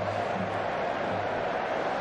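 Football stadium crowd noise: a steady din from the stands, with a faint low pulse repeating at a regular beat underneath.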